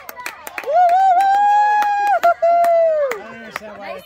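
A spectator's long, high-pitched cheering shout, held for about two and a half seconds with a brief break, over scattered hand claps.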